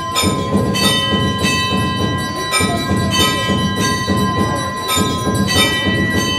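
Hanging brass temple bell rung over and over, a fresh strike every half second to a second, with each stroke's ringing tones running on into the next.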